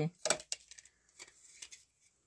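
A few faint light clicks and taps from a hand handling a plastic child's high-chair tray.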